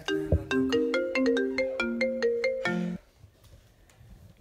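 Mobile phone ringtone playing a quick melody of bell-like notes, signalling an incoming call; it cuts off about three seconds in as the call is answered.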